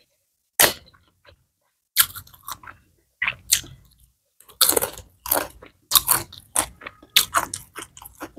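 Close-miked chewing and biting of crunchy food: sharp, irregular crunches, a few at first, then coming faster and denser from about halfway through.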